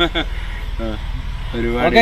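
Men's voices talking in short bursts, over a steady low rumble.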